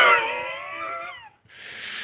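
A man's high-pitched, drawn-out whining laugh, sliding slowly down in pitch for about a second, followed by a breathy exhale.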